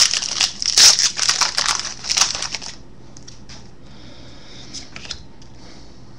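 Foil wrapper of a trading-card pack crinkling and tearing as it is opened by hand. It is a dense run of crackles that stops about three seconds in, leaving only faint handling ticks.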